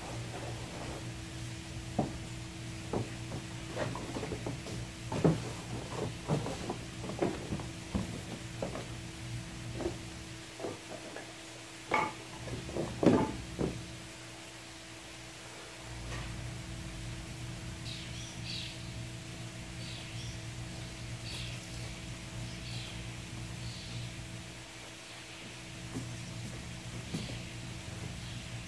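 A stiff rolled plastic hot tub slider sheet being unrolled and handled on the ground: a string of irregular knocks and clacks, the loudest pair about halfway through, then the handling goes quiet.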